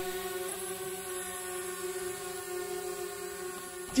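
DJI Spark quadcopter hovering, its propellers giving a steady hum that holds one even pitch throughout.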